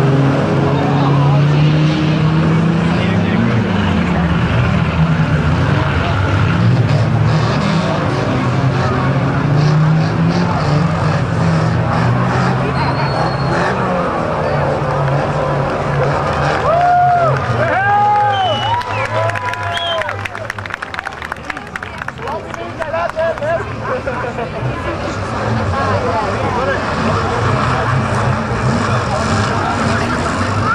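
Banger race cars' engines running and revving around a shale oval, over spectators' voices. About halfway through, the engine noise falls away, leaving crowd chatter, a few high rising-and-falling sounds and some rattling clicks.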